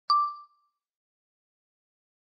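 A single ding sound effect for a logo reveal: one sharp struck tone that rings briefly with a high overtone and dies away within half a second.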